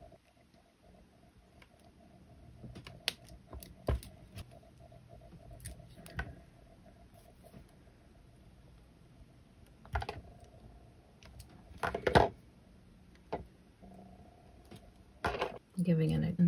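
Scattered small clicks and taps of copper wire and nylon-jaw pliers being handled while wire-wrapping a pendant, irregular and quiet, with the sharpest clicks about ten and twelve seconds in.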